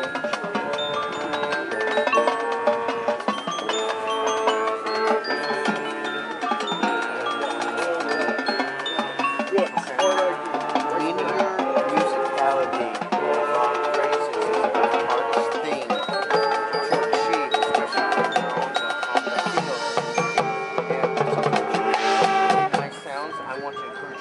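High school marching band playing a field show: massed brass and winds with front-ensemble mallet percussion. The music drops suddenly to a quieter passage near the end.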